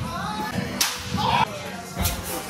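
A pitched baseball arriving at home plate, one sharp crack a little under a second in.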